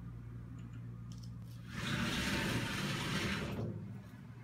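Frosted-glass sliding shower door rolling open along its track: a rushing noise that starts a little under two seconds in and lasts about two seconds.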